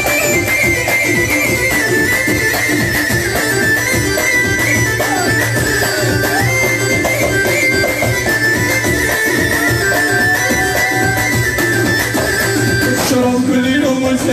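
Live Moroccan chaabi music played on an electronic arranger keyboard: an ornamented lead melody over a steady beat. About a second before the end the texture changes suddenly, and the backing drops to a held low note.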